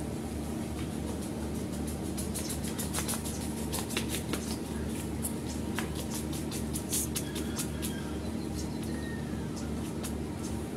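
Steady low background hum, with a scatter of faint, sharp high clicks through the middle and a few faint short chirps near the end.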